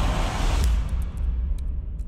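Film trailer soundtrack: a deep rumble under a dense, noisy wash that fades away over the second half. Near the end a few sharp keyboard clicks come in as text is typed.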